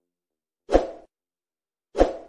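Two short edited-in sound effects for an animated subscribe graphic, one about three-quarters of a second in and one near the end, each a sudden hit that dies away within half a second.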